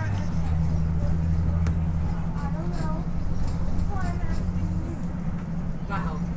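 School bus engine running with a steady low drone, heard from inside the bus, its note shifting slightly just after the start. Passengers' voices talk faintly over it.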